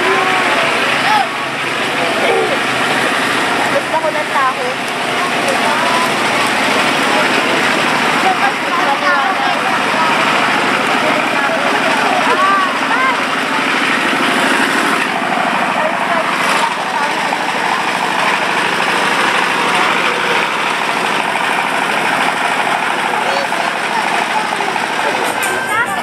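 Procession crowd: many voices talking at once in a steady, dense murmur, over a constant droning hum.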